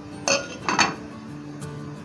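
A glass lid being set on a metal saucepan, clinking twice against the rim about a third of a second and three quarters of a second in.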